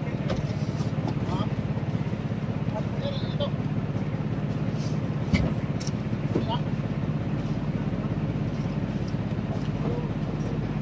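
An engine running steadily with a low, even hum, with faint voices in the background and a single knock about five seconds in as ice blocks are handled in the hold.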